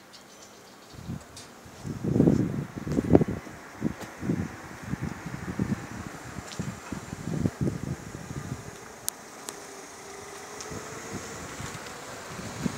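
Wind buffeting the microphone outdoors: irregular low rumbling gusts, loudest about two to three seconds in. Two sharp clicks come about nine seconds in.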